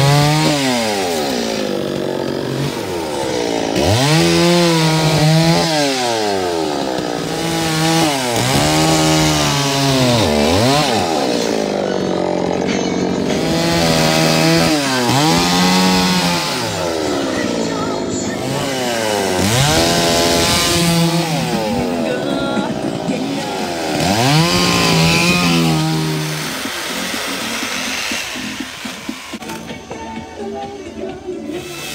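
Petrol chainsaw carving into a log, its engine pitch dropping and climbing again six or seven times as the chain bites into the wood and the throttle is opened. It runs quieter and rougher for the last few seconds.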